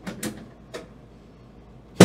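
A few short, sharp knocks and clicks from a chiropractic adjusting table and the hands working on a patient's low back: two close together just after the start, a fainter one a little later, and a louder knock at the very end as the chiropractor presses down.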